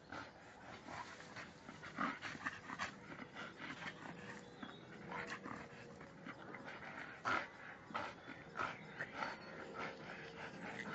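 A dog hanging from a tree branch by its clenched jaws, making short, irregular breathy noises as it swings, with the loudest about two seconds in and again about seven seconds in.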